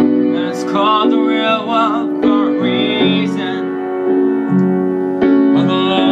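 Piano playing sustained chords under a solo voice singing long, wavering notes without clear words; about halfway through the voice stops and the piano carries on alone, and the voice comes back just before the end.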